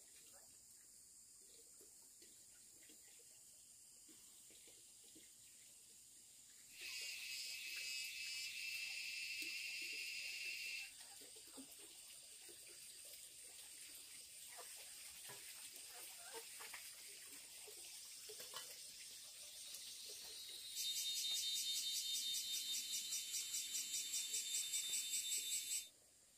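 Insects singing in a high, steady drone. It grows louder twice, and near the end it pulses rapidly before cutting off suddenly.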